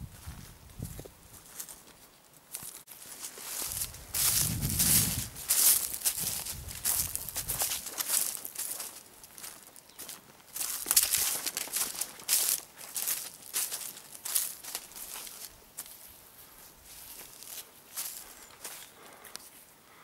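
Footsteps through dry undergrowth, with bare twigs and branches rustling and crackling against the walker: an irregular run of crackles and rustles, busiest in the middle of the stretch.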